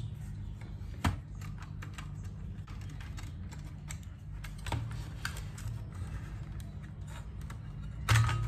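Small irregular clicks and taps of a screwdriver and metal parts as screws are taken out of a car radio head unit's sheet-metal chassis, with one sharper knock about a second in, over a steady low hum.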